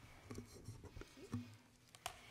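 Faint handling noise on a lectern microphone: several soft knocks and light rubbing as the gooseneck mic is moved.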